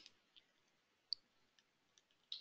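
Near silence with a few faint clicks from a computer keyboard being typed on, one sharper click a little after a second in.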